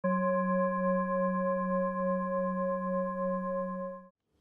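A sustained ringing tone with several overtones, held at a steady level with a slight pulse, that cuts off at the very end.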